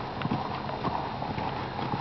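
A saddled horse's hooves walking on soft dirt arena footing: a few soft, irregular hoofbeats over a steady background hiss.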